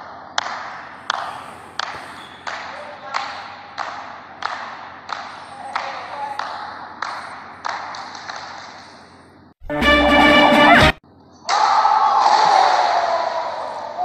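A basketball dribbled on a hardwood gym floor, regular bounces about one and a half a second with a hall echo. About ten seconds in comes a sudden, very loud distorted sound effect lasting about a second. From about eleven and a half seconds a loud voice-like sound runs, falling in pitch.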